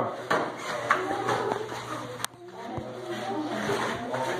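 Faint, indistinct voices echoing in a hall, with a few short knocks near the start and one sharp click about two seconds in.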